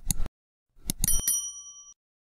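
Animated subscribe-button sound effects: a couple of quick mouse clicks, then another click and a bright bell ding that rings on for most of a second.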